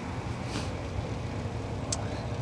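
Steady low rumble of wind and riding noise on a handheld phone's microphone while cycling, with a brief rustle about half a second in and a short click near the end.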